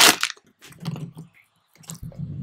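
Plastic packaging bag crinkling and rustling in a few short bursts as a laser module is pulled out of it, with a small click near the end.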